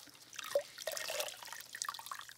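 Rinse water splashing and dripping in a plastic tub as gloved hands squeeze and press a wad of wet raw wool fleece, in small irregular splashes with one sharper drip about half a second in.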